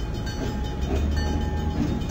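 Train sound effect: a steady low rumble of a locomotive running along the track.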